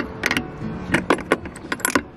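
A folding metal car door step being unhooked from the door's latch striker: a string of about eight sharp clicks and clinks as the hook is worked off the striker loop.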